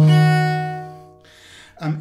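A single low note bowed on a bass viola da gamba, ringing on at a steady pitch after the stroke and dying away within about a second and a half.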